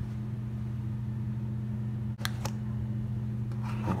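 Steady low electrical hum of a machine running, with two faint clicks just after two seconds in.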